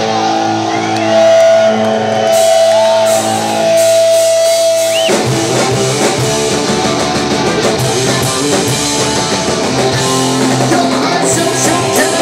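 Live hardcore punk band: held electric-guitar notes ring on their own for about five seconds, then the full band crashes in with drums, bass and distorted guitars playing fast and loud.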